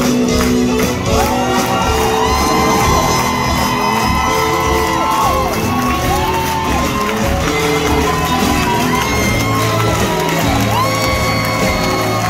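A theatre band plays the upbeat curtain-call music of a stage musical while the audience cheers and whoops over it.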